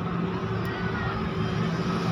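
A steady low mechanical hum over a constant background noise, with a faint higher tone gliding briefly through the middle.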